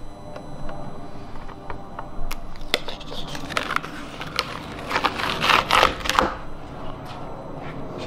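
Paper handling: a screen-printed paper poster is rustled and lifted off its print board, with scattered light clicks and a burst of paper rustling about five to six seconds in.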